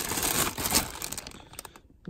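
Plastic bags holding AC power adapters crinkling as a hand rummages through them in a plastic bin, with many small clicks and rattles of the adapters and cords. The sound fades out over the last half second.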